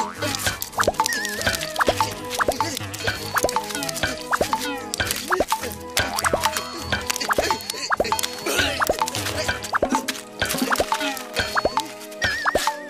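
Cartoon-style plop sound effects repeating in quick succession over upbeat background music, standing for toy water-gun shots splattering a target.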